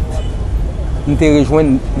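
A man speaking a short phrase in Haitian Creole into a handheld microphone, over a steady low rumble.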